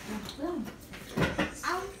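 Indistinct voices talking, with a short knock a little past halfway, then a voice starts a word near the end.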